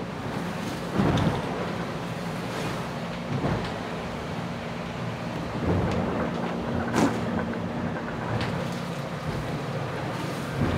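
Aboard an IMOCA 60 racing yacht in heavy weather: a steady rush of wind and water, broken by sudden thuds and splashes as the hull slams into waves, loudest about a second in and again about seven seconds in. A low steady hum runs underneath.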